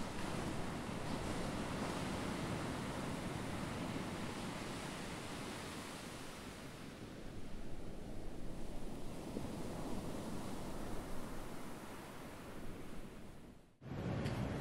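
Ocean surf sound effect under an animated intro: a steady wash of noise that swells about halfway through and cuts off suddenly near the end.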